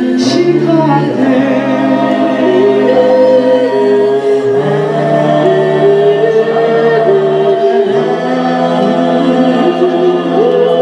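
A small mixed group of women's and a man's voices singing in harmony into microphones, unaccompanied, holding long notes that change together every second or so.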